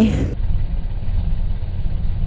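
A vehicle engine idling: a steady low rumble.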